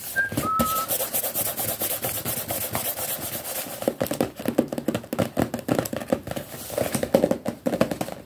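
Fast, aggressive ASMR rubbing and scratching close to the microphone: a dense run of rapid, rough strokes, with a brief high squeak just after the start.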